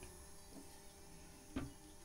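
Near silence: faint room tone with one short knock about one and a half seconds in.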